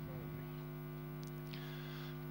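Steady electrical mains hum in the broadcast audio, with no other sound standing out.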